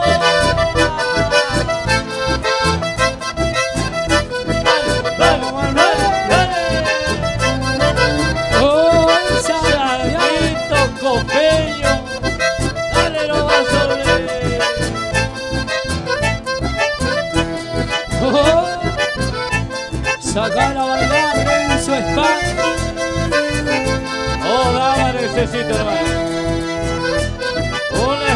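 Chamamé dance music led by an accordion, playing a melody over a steady, evenly pulsed beat.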